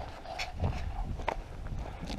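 Footsteps on a gravel path: a few scattered, irregular steps.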